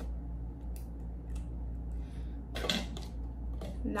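Small handling sounds of foam cups and felt-tip markers on a wooden table: a few faint clicks and one louder brief scuffle a little past halfway, over a low steady hum.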